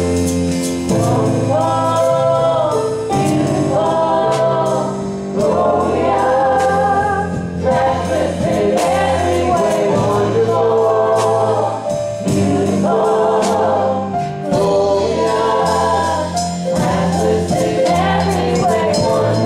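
A gospel praise team singing together in harmony, with live band accompaniment: long sung phrases held over a steady bass line and light percussion.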